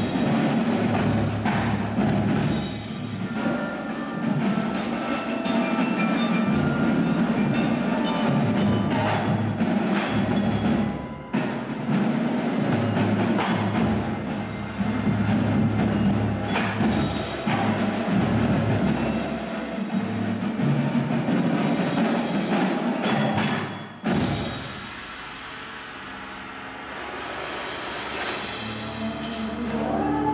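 Percussion ensemble music: drum strokes over sustained pitched mallet and bass tones. It drops suddenly to a much softer passage about four-fifths of the way through, then builds again.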